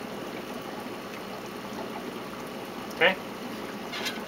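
Steady running and trickling water from the saltwater pond's circulation.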